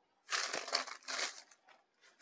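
Dola silk saree rustling as it is lifted and unfolded by hand, in a few short swishes over the first second and a half.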